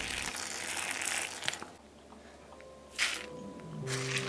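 Dry crunching and rustling for the first second and a half, a short crackle about three seconds in, then background music begins near the end.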